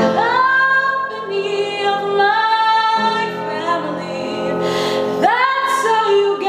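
A woman singing long held notes, accompanied on an upright piano.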